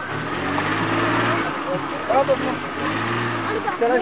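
A large vehicle's engine revs twice, each time rising and falling in pitch over about a second, with a crowd's voices in between.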